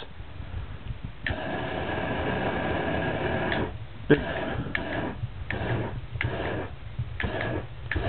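DMX fire machine spraying aerosol butane through its solenoid valve past a spark igniter: a steady hissing jet lasting about two seconds, then a run of short bursts about one and a half a second as the valve is pulsed to throw puffs of flame.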